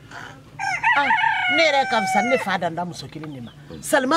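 A rooster crowing once, a single long call of about two seconds that starts about half a second in and falls away at the end, over a woman talking.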